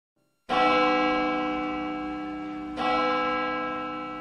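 A church bell tolling twice, about two seconds apart, each stroke ringing on with many overtones and slowly dying away.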